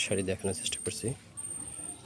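A person speaking briefly, words the recogniser left out, with a thin high-pitched tone that drops in and out behind the voice.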